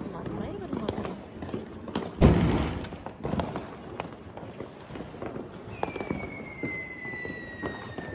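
Diwali firecrackers going off around the rooftop: one loud bang about two seconds in, scattered small pops, and from about six seconds a long whistle that glides slowly down in pitch, like a whistling firework.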